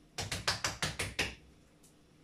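Hands patting oiled msemen dough on the kitchen counter: about eight quick, light taps in just over a second, then they stop.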